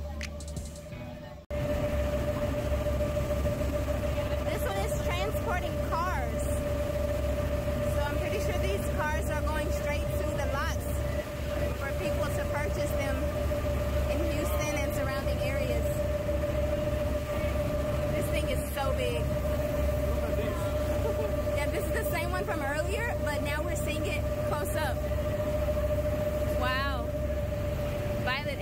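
Tour boat's engine running under way with a steady hum over a low rumble of engine and water, cutting in abruptly about a second and a half in; indistinct voices wander over it.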